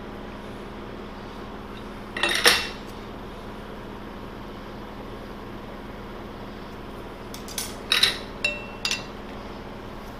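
Steel-on-steel clanks and clinks from a four-jaw lathe chuck being set up with a chuck key and a chrome-plated steel bar in its jaws. There is one short clatter about two seconds in, then a cluster of sharp clinks near the end, one ringing briefly, over a steady low shop hum.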